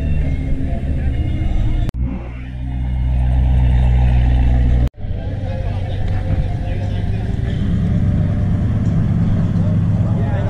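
A car engine idling with a steady low rumble, over the voices of people chatting. The sound cuts off abruptly three times, about 2 s in and about 5 s in among them.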